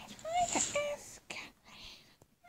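Short, very high-pitched voice sounds that bend in pitch, with a whispery hiss about half a second in.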